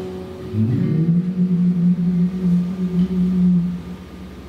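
A man's singing voice holding the final note of an acoustic ballad. It slides up into one long, steady note of about three seconds and stops just before the end, with acoustic guitar faintly behind.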